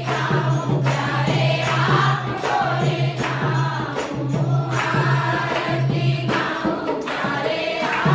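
Hindu evening aarti hymn sung by a group of voices, with regular percussion strokes and a low steady tone that comes and goes.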